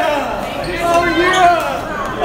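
Several people's voices talking and calling out over one another, with no clear words.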